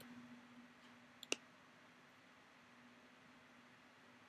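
Near silence with a faint steady hum, broken about a second in by a quick click of a computer mouse, a tiny tick and then a louder one.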